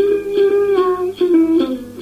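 Tày Then folk music: a đàn tính long-necked lute plucked in an even rhythm of about two notes a second, with a held sung note that fades out about a second in.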